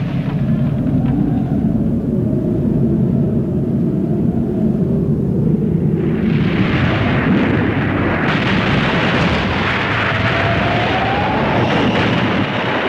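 Animated war-scene sound effects: a low rumble that swells about six seconds in into a loud, continuous roar like aircraft engines and distant explosions, with a short rising whistle near the end.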